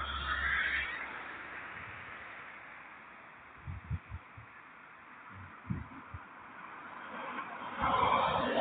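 Steady road and wind noise of a car driving, heard from inside. The hiss swells at the start and again at the end, and a few short, dull low thumps come near the middle.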